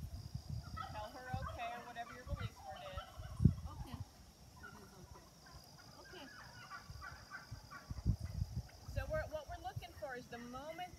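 A flock of farm birds calling over and over in short, overlapping calls, likely the stock for the herding lesson. There is low rumbling underneath and a single sharp thump about a third of the way in.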